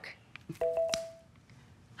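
Amazon Fire TV's Alexa chime: a short, steady electronic tone of two pitches together, about half a second in, sounding after the spoken voice request as Alexa finishes listening and before she answers.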